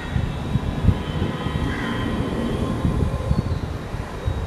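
A pen writing on paper laid on a desk: irregular soft low knocks and rumble as the strokes go down.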